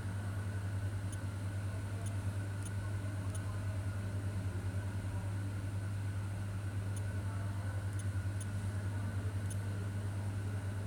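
A steady low hum, even in level throughout, with faint light ticks now and then.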